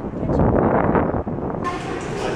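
Loud outdoor street noise with a rumble, like traffic passing. It cuts off abruptly about one and a half seconds in to the steady murmur of a café.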